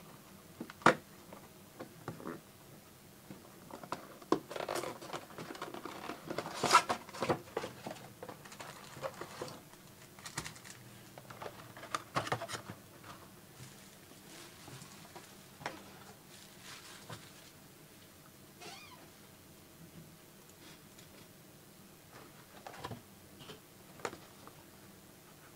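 Foil trading-card pack wrappers crinkling and rustling as the packs are handled and stacked, with scattered taps and clicks. The sounds are busiest in the first third and sparser after that.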